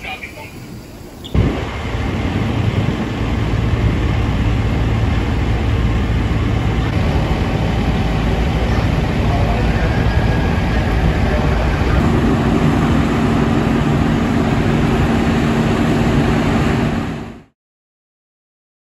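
Parked fire engines' diesel engines running steadily, a loud low rumble with a steady hum, joined by a second steady tone about twelve seconds in. Cuts off suddenly near the end.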